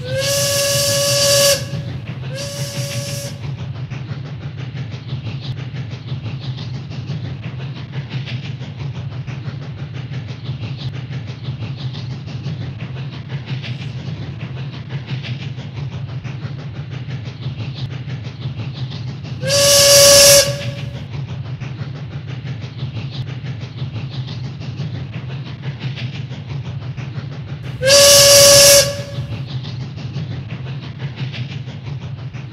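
Steam train running with a steady low rumble, its steam whistle blowing four times on one pitch: a long blast and a short one at the start, another about two-thirds of the way through, and a last one near the end.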